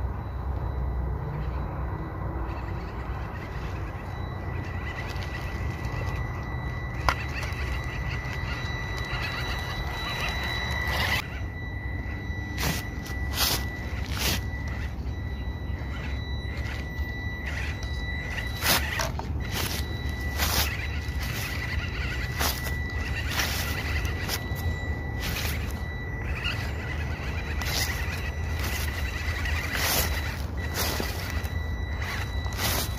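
1/18-scale RC crawler's small electric motor and gearbox whining steadily as it crawls over leaves and grass, with a low rumble underneath. From about a third of the way in come many short clicks and crackles as the tyres go over twigs and dry leaves.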